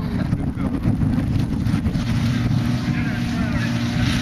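Suzuki SJ 4x4's engine running as it crawls through the mud course, with a steady engine note showing through from about halfway. Heavy wind buffets the microphone throughout.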